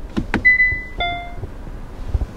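Two quick clicks from the Hyundai Palisade's camera button, then two electronic beeps from the car as its surround-view camera display comes on. The first is a steady high beep about half a second long; the second, about a second in, is a shorter, lower chime with several tones.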